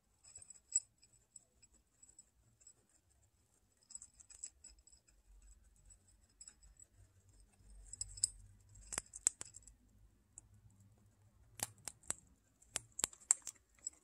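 Guinea pigs chewing dry feed pellets and oat grains from a ceramic dish: a faint run of small crisp crunches and clicks, with sharper clicks in clusters about nine seconds in and again in the last few seconds.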